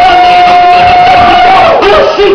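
Loud live hip-hop music over a club PA, with one long held note that slides up at the start, holds steady, and drops away near the end.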